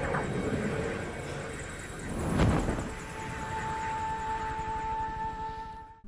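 Film soundtrack: a Black Hawk helicopter's rotor noise under a tense music score, with a swell of rumble about two and a half seconds in and a held high note entering about three seconds in.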